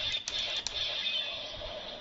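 Electronic toy sword (DX Kaenken Rekka) playing a short musical sound effect through its small speaker. It opens with a few sharp hits and then holds a shimmering tone that slowly fades.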